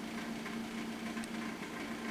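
A faint, steady background hum with a single low tone over a light hiss. There is no speech and no distinct event.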